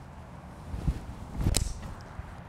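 A golfer's five-iron tee shot: one sharp click as the clubface strikes the ball, about one and a half seconds in. Under it is a low steady rumble of wind on the microphone.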